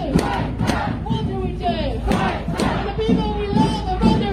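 Crowd of protest marchers shouting and calling out together, many voices overlapping with some long held calls.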